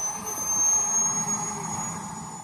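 A model jet's turbine whining at a steady high pitch that slowly creeps upward, over the low hum of the pit area.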